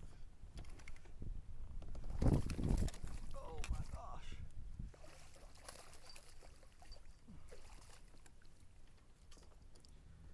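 A hooked largemouth bass thrashing and splashing at the water's surface beside a kayak as it is reeled in, loudest about two seconds in and fading to quieter lapping and rustling in the second half.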